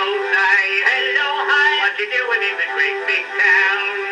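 Early acoustic-era 78 rpm record of a comic male vocal duet with small orchestra: men singing over the band, the sound thin with no deep bass.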